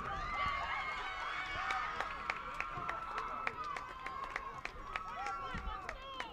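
Indistinct, overlapping voices of players and spectators calling out across an outdoor soccer field, with scattered sharp clicks.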